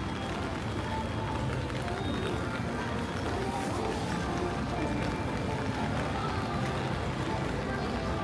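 Rainy city street ambience: steady patter of rain on an umbrella, with indistinct chatter of passers-by and some music from the shops.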